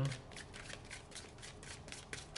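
A tarot deck being shuffled by hand: a quick, irregular run of soft card flicks and slaps.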